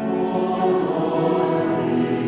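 Large mixed choir of men's and women's voices singing sustained chords, the sound swelling slightly as a new phrase begins.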